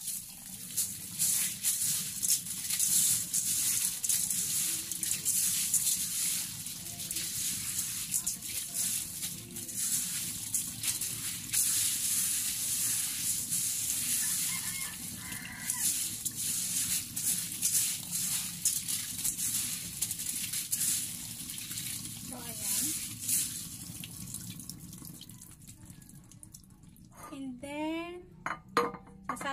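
Kitchen tap running in a steady stream into a stainless steel colander as mung beans are washed and rubbed by hand under it. The flow stops near the end.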